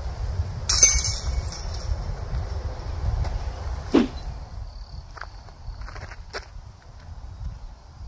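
Wind rumbling on the microphone outdoors, with a short loud rattle about a second in and a sharp click about four seconds in.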